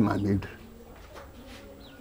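A man's voice finishing a phrase in the first half-second, then a quiet stretch with faint low cooing, like a dove or pigeon, in the background.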